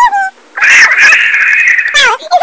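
A brief high pitched vocal sound, then a loud, sustained shriek lasting about a second and a half, from a voice sped up and raised in pitch by a laptop voice effect.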